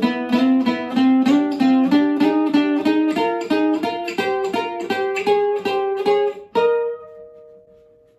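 Acoustic guitar played fingerstyle: a quick line of single picked notes, about four a second, climbing slowly in pitch. About six and a half seconds in, one last higher note is struck and left to ring, fading away.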